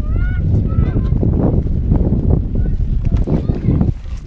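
Strong wind buffeting the microphone in a dense, rough rumble, with a few short high-pitched calls in the first second.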